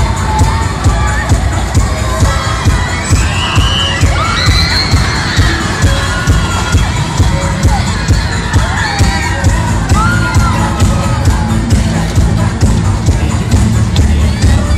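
Loud fairground music with a steady beat, about two pulses a second, over riders screaming and shouting as the cars spin around the ride.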